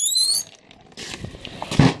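Door hinge squeaking with a quick rising pitch, then a single thump near the end.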